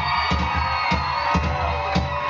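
Live band playing an instrumental vamp: a steady kick-drum beat, about two thumps a second, under held chords.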